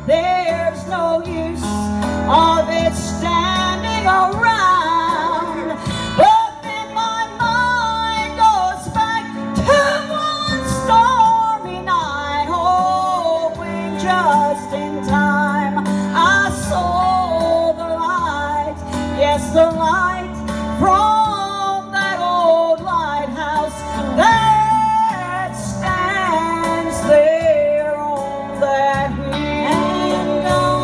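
A woman singing lead in a gospel song through a microphone, her melody gliding and held over a steady instrumental accompaniment.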